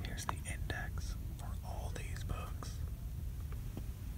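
A person whispering, short breathy syllables over a steady low rumble.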